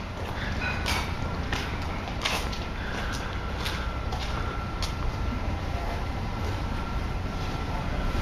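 Footsteps on a concrete driveway, a sharp step about every 0.7 seconds, over a steady low rumble; a faint steady high tone comes in about three seconds in.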